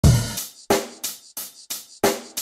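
Music: a drum beat opening with a deep kick, then sharp drum hits about three a second, each dying away quickly.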